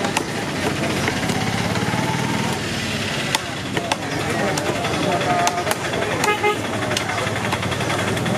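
Busy market din: a vehicle engine running, voices in the background, and a short horn toot about six seconds in. A few sharp knocks of a heavy knife chopping fish on a wooden block come through now and then.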